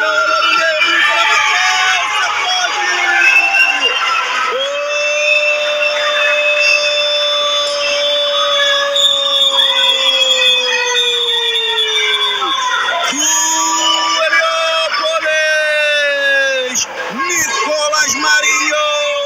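A sports commentator's long drawn-out goal cry: one note held for about eight seconds that sags slightly in pitch at the end. Shouting and crowd cheering come before and after it.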